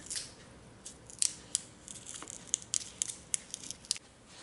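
Transfer tape with adhesive foil vinyl being peeled back flat from its paper backing: a quiet run of small, sharp crackles and ticks, irregularly spaced, starting about a second in.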